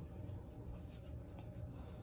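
Faint soft rubbing and rustling of a hand stroking a puppy's fur on a fleece blanket, over a low steady rumble.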